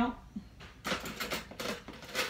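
A woman's voice cuts off at the start, then a quick run of light clicks and rattles for about a second, beginning about a second in.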